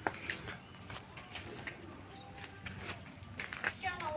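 Faint bird calls in a garden, a few short, thin calls over scattered light clicks.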